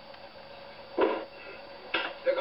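Steady background hiss and hum from an old film soundtrack, with one short voice sound about a second in.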